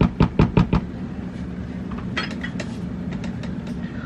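A spoon stirring thick stew in a stainless steel Instant Pot inner pot: a quick run of scrapes and knocks, about six a second, that stops about a second in. A steady low hum carries on underneath.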